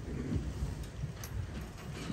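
A congregation getting to its feet: low shuffling and rustling of people and seats, with a few faint knocks.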